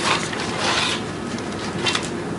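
Paper rustling and sliding close to a desk microphone: a short scrape at the start, a longer one about half a second in, and a brief sharp click near the end.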